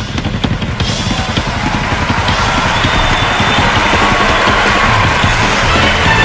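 Loud music with a drum kit to the fore: drum hits and cymbal wash over the rest of the band.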